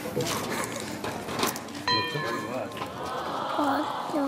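A small child's high-pitched squeal about two seconds in, lasting about a second, followed by short gliding voice sounds.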